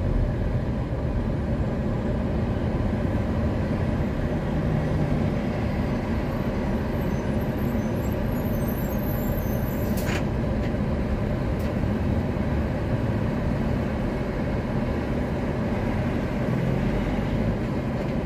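Steady low road and engine noise heard inside a car creeping along in slow traffic, with a brief sharp hissing click about ten seconds in.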